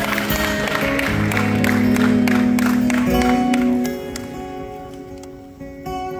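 Acoustic guitar playing slow, sustained opening notes while audience applause carries on over it, the clapping dying away about four seconds in and leaving the guitar ringing alone; a fresh strum comes in near the end.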